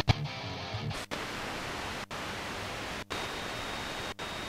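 Eton G3 radio's FM tuner stepping between stations: a steady hiss of static, cut by a short silent dropout about once a second as each tuning step is made. A faint trace of a station fades out in the first second.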